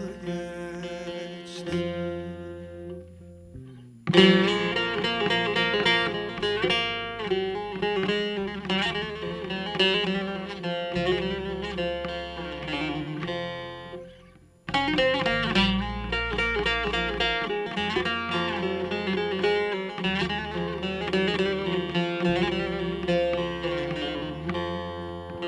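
Bağlama (Turkish long-necked lute) playing a folk melody in quick plucked notes, with a low bass line underneath. The music jumps suddenly louder about four seconds in, breaks off briefly around fourteen seconds, and starts again.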